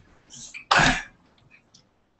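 A person clears their throat with one short, harsh cough about three quarters of a second in, preceded by a softer lead-in. A few faint clicks follow.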